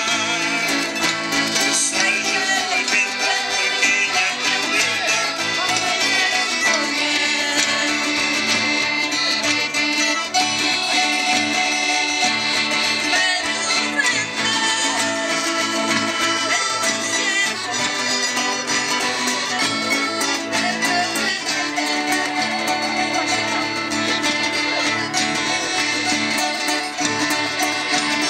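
Portuguese folk ensemble (rancho folclórico) playing live: accordion and acoustic guitars with singing, amplified through PA speakers.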